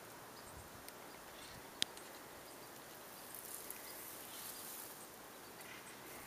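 Quiet outdoor ambience: a faint steady hiss, with a single sharp click a little under two seconds in.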